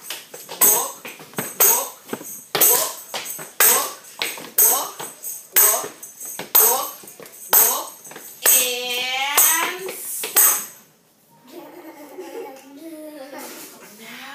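Tambourine struck in a steady walking beat, about two taps a second with the jingles ringing on each, stopping about ten and a half seconds in. A voice calls out with a long swooping pitch shortly before the beating stops.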